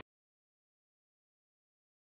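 Silence: the sound track is blank, with no sound at all.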